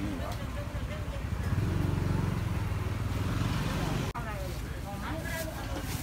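Busy market ambience with voices of people around, and a motor engine running close by for a couple of seconds near the middle. The sound cuts out for an instant about four seconds in.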